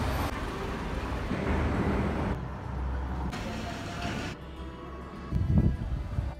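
Road traffic, cars driving past on city streets, heard in short snippets that change abruptly about once a second, with a louder low rumble near the end.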